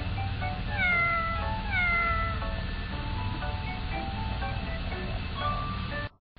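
Light background music with two cat meows over it, about one and two seconds in, each falling in pitch. The music cuts off at the end.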